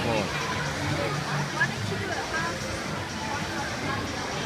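Indistinct voices of spectators calling and talking in an indoor pool hall, over a steady crowd hum.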